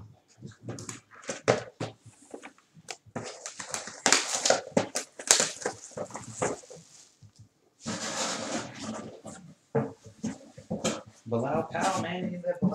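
Plastic shrink-wrap on trading-card boxes crinkling and crackling as the boxes are handled and unwrapped, a quick run of short rustles and cracks with cardboard shifting.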